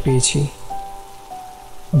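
Soft background music of held tones, stepping down in pitch twice, over a steady rain sound effect. A male narrating voice ends about half a second in and starts again near the end.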